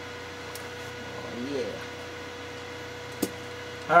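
Steady electrical hum with room noise, a brief rising-and-falling tone about a second and a half in, and a single sharp click near the end.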